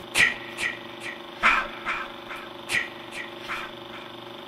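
Film projector sound effect: a steady mechanical hum with sharp clicks about every 0.4 s, a louder click leading each group so the pattern repeats about every second and a quarter.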